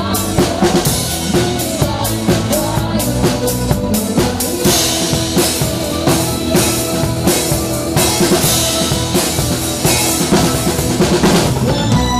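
Live band playing an upbeat dance number, a drum kit keeping a steady beat on bass drum and snare.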